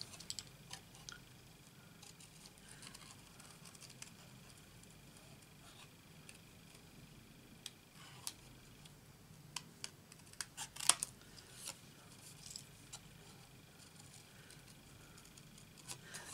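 Small craft scissors snipping around a stamped flower on cardstock: faint, scattered snips, with a run of louder ones about eight to eleven seconds in.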